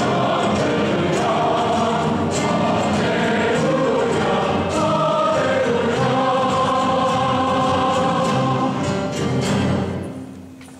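A congregation singing a hymn together, led by song leaders on microphones, many voices in a large, echoing hall. The singing stops at the very end.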